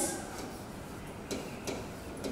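Faint clicks and taps of a pen tip on the glass of an interactive display board as letters are handwritten, two clearer clicks in the second half.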